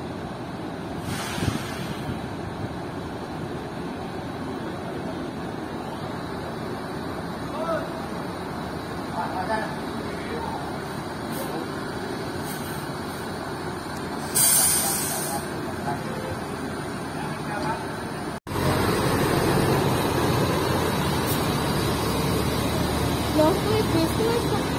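Diesel coach engines running, with a short, loud hiss of air from a bus's air brakes about 14 seconds in. After an abrupt cut near the end, a louder bus engine rumbles as a coach pulls away, with people's voices.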